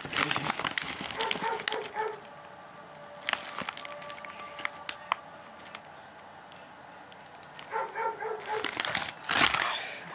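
A pit bull barking in two spells of short, repeated barks, about a second in and again near the end.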